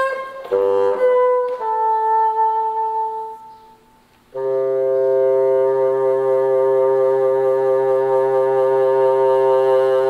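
Solo bassoon playing: a few quick notes, then a note that fades away, and after a brief lull one long, steady low note held for about six seconds.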